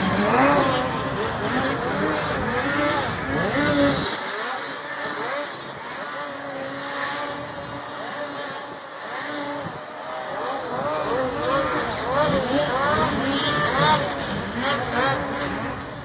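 Snocross race snowmobiles' two-stroke engines revving up and down again and again as several sleds run the track.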